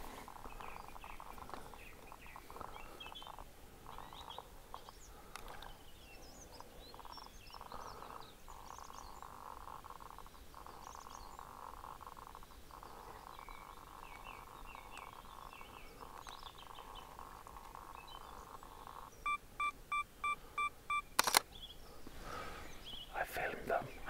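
Faint bird chirps over a steady background hum. Near the end a mirrorless camera gives six quick, evenly spaced electronic beeps, and then its shutter fires with one sharp click, typical of a self-timer counting down to the exposure.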